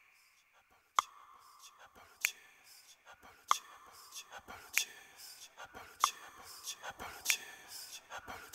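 Sharp clicks roughly every second and a quarter, with smaller ticks between them, over a faint whispery hiss: the sound-design intro of a recorded dance soundtrack.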